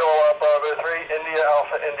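Speech heard over an FM amateur radio receiver: a voice relayed through the ISS repeater, narrow-band and cut off above the voice range.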